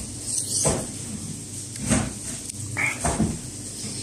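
A person chewing and eating fried hairy tofu close to the microphone: irregular short mouth noises spaced a second or so apart.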